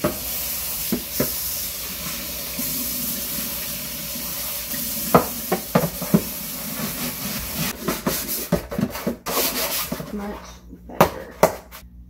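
Kitchen faucet running into a stainless steel sink as a plastic drawer tray is rinsed under it, with scattered clicks and knocks of the plastic against the sink. The running water stops about ten seconds in, followed by a couple of sharp clicks.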